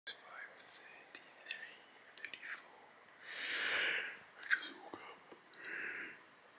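A sleepy man whispering the time, with soft mouth clicks, then a long breathy yawn about three seconds in and another yawn beginning near the end.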